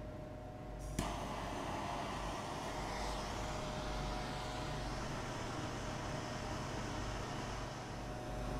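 Hand-held gas torch lit with a sharp click about a second in, then its flame hissing steadily as it heats a melt dish of gold powder to melt the charge.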